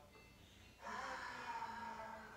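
A person's deep, audible breath, a rush of air that starts suddenly about a second in.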